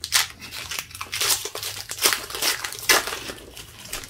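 Foil wrapper of a Pokémon trading-card booster pack being torn open and pulled apart by hand, a dense run of sharp crinkling crackles throughout.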